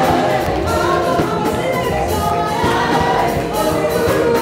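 Loud gospel praise music: a choir singing over an amplified band with a steady drum beat and bass.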